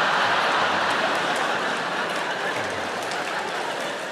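Large theatre audience applauding, a dense, even clatter that slowly fades.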